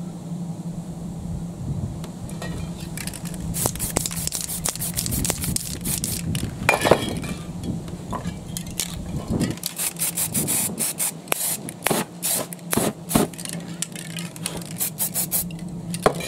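Aerosol spray paint cans hissing in short bursts, spraying paint onto a stencil. The bursts are few at first and come quicker in the second half, over a steady low hum.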